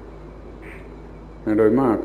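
A pause in a man's speech that holds only the steady hum and hiss of the recording. His voice resumes about one and a half seconds in.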